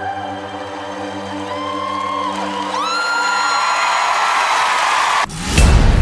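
A woman singing long held notes over music, stepping up in pitch and holding a high note. About five seconds in it cuts abruptly to louder music with a heavy bass beat.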